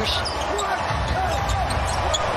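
Live basketball game sound from the court: a steady arena background with faint voices.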